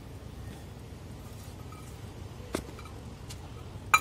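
Steady low background hum with a few light clicks, one about two and a half seconds in and another just before the end, from a steel bowl and a plastic hand-pull chopper being handled as mint and coriander leaves are tipped in.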